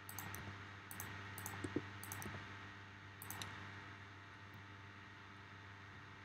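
Faint clicks from a computer mouse and keyboard, in small quick clusters during the first three and a half seconds, then stopping, over a steady low electrical hum.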